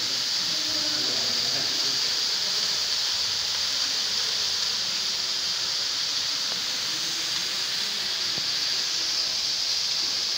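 CO2 fire extinguishers being emptied, the gas escaping in a steady, unbroken high hiss.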